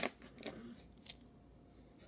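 A sharp click at the very start, then a few faint taps and rustles as a small toy figure is handled on a hardwood floor.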